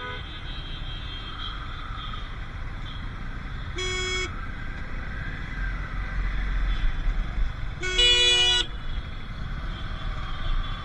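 Dense street traffic: steady low engine and road noise, with a vehicle horn honking twice, a short toot about four seconds in and a longer, louder one about eight seconds in.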